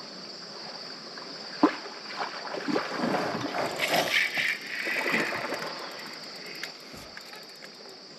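Knocks, rubbing and water noise from a plastic fishing kayak while a hooked channel catfish is being fought on rod and reel. There is a sharp knock about a second and a half in, then a few seconds of busier handling and splashing with fine clicking from the reel, settling down near the end. Crickets chirr steadily underneath.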